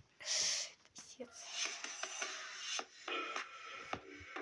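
A short breathy hiss near the start, then quiet intro music of a YouTube piano-tutorial video playing through laptop speakers.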